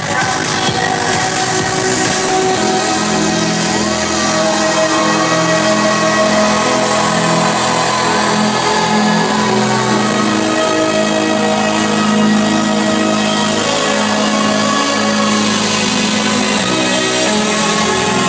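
Loud electronic dance music from a live DJ set over a concert PA. It has sustained synth notes and a gliding lead line, and it is steady throughout but thin in the deep bass.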